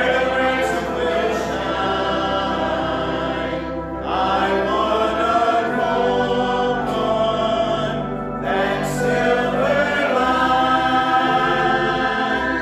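A congregation singing a hymn together, in long held phrases that break about every four seconds.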